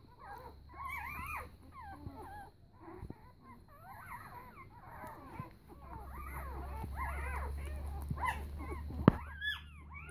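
Newborn puppies, four days old, squeaking and whimpering as they nurse: many short, high calls that rise and fall in pitch and overlap one another throughout. A low rumble runs under the second half, and there is one sharp click near the end.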